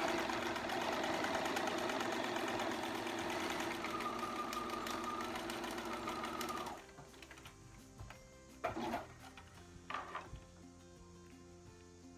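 Domestic sewing machine running at a steady speed, stitching through vinyl, then stopping about seven seconds in. A few light clicks follow.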